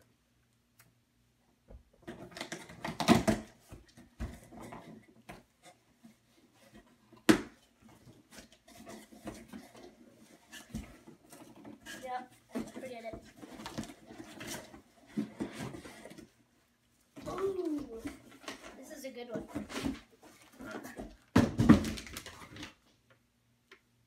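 A cardboard shipping box being cut and torn open, with irregular tearing, rustling and knocks. The loudest bursts come about three seconds in and again near the end, with low voices in between.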